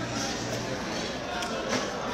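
Restaurant dining-room background: a steady murmur of distant voices and room noise, with a low hum in the first part.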